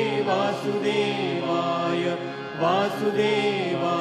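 A chanted Hindu mantra set to music, sung in long held notes with slow pitch bends; it dips in loudness briefly about two and a half seconds in.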